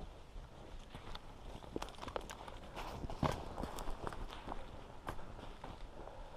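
Footsteps through leaf litter and twigs on a forest floor: irregular crunches and snaps, the sharpest one about three seconds in.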